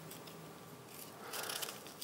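Dry onion skin being peeled off by hand: faint papery crackling and rustling, a little louder in the second half.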